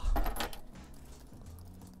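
Computer keyboard keystrokes: a quick clatter of clicks in the first half-second, then much quieter, with a faint low steady hum underneath.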